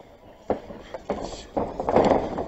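Fight arena sound from the ring: a sharp smack about half a second in, then rising noise of the crowd and scuffling bodies on the mat as a takedown attempt is sprawled on.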